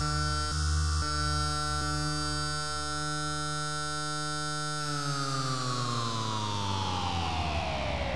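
Electronic dance music on a held synthesizer chord, with bass beats in the first second or so. About five seconds in, the whole sound starts sliding steadily down in pitch, like a track being slowed to a stop on the DJ deck to end the mix.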